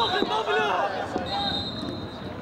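A referee's whistle: a long steady blast that ends just after the start, then a second long blast about a second and a half in, over players' shouts across the pitch.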